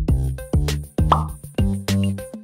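Electronic background music with a steady drum-machine beat and bass notes. A short pop sound effect comes about halfway through.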